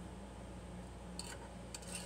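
Quiet room tone with a steady low electrical hum. Two brief, faint soft sounds come a little past halfway and again near the end.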